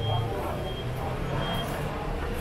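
Steady low motor hum, with a thin high beep sounding three times, evenly spaced, and voices in the background.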